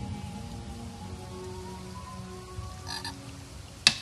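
Quiet gap between two electronic dance tracks, holding faint frog-like croaking sounds. Just before the end, a loud sharp drum hit opens the next track.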